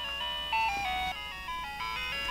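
Light and Sound Butterfly toy playing an electronic tune, a simple melody of beeping notes stepping up and down in pitch, set off by a press of its adapted switch.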